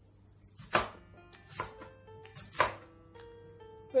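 A crinkle-cut wavy-blade slicer chopping down through a raw potato onto a plastic cutting board: three sharp cuts about a second apart, with lighter cuts between. Quiet background music plays underneath.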